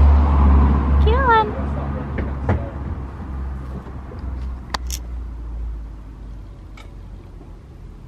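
Low engine rumble of a motor vehicle, loud at first and fading away over several seconds, with a short rising call about a second in and a few sharp clicks later.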